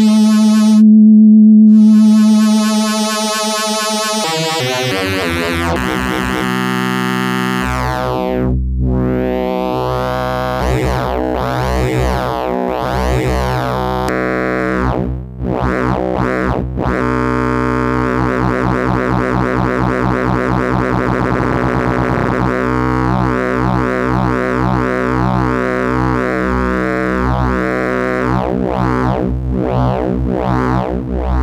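Eurorack modular synthesizer tone run through the SSSR Labs Alisa wave shaper, a wavefolder modelled on the Soviet Alisa 1377 synth, with its knobs being turned by hand. A steady pitched tone changes character about four seconds in, a low bass drone joins a few seconds later, and the overtones keep sweeping and shifting as the shaping is varied.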